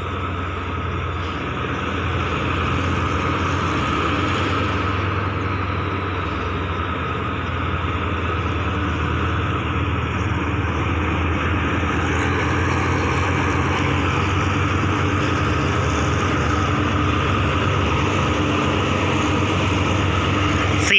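Diesel engine of a GE GEA-class diesel-electric locomotive, number 4560, running with a steady low drone as it hauls a freight train slowly in, growing slightly louder as it nears.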